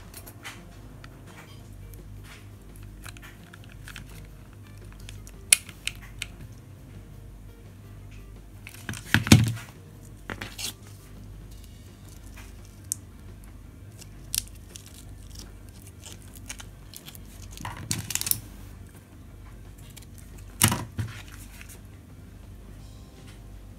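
Hands handling a glitter-fabric bow and a metal hair clip: light rustling and scattered short clicks and knocks, the loudest about nine seconds in, over the steady hum of a tumble dryer running in the background.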